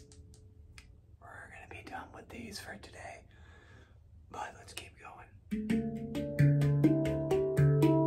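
Handpan struck with bare hands from about five and a half seconds in: a quick run of ringing metallic notes over a low, sustained bass note. Before that, only soft rustling and handling noise.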